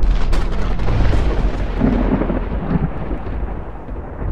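Rolling thunder, used as a sound effect: it breaks in suddenly with a few sharp cracks, then rumbles deep and slowly dies away.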